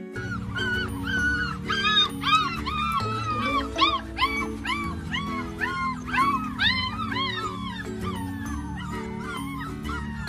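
A puppy whining and yelping in a quick run of short, high cries that rise and fall, about two a second, over background music.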